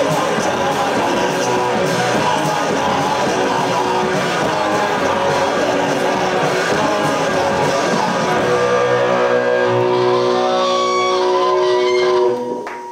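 Live rock band playing loud: electric guitars, bass and drums with shouted vocals. About two-thirds of the way in the band hits and holds a ringing chord as the song ends.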